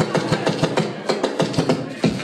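Rapid, uneven percussive hits over loud crowd noise in a packed club, a few hits a second, ending in a sharp louder hit.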